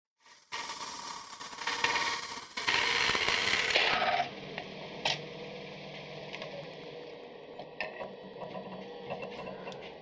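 Small scraper cutting inside a hollow form of wet spalted beech turning on a lathe: a hissing scrape that starts about half a second in, grows louder and stops about four seconds in. After that the lathe runs on more quietly, with a few light clicks.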